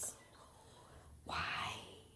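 Whispered speech: a faint hiss at the start, then one short whispered word about a second and a half in.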